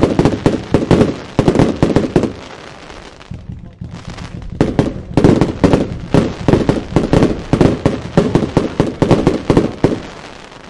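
Zena 'Snapte?!' fireworks cake (multi-shot box) firing, its shells bursting into red and gold stars with a dense, rapid run of bangs and crackles. It eases off for about two seconds a quarter of the way in, then fires a second furious volley that stops just before the end.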